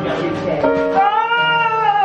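A woman singing a long wordless note into a handheld microphone, the pitch rising and then falling back, over a steady held accompaniment.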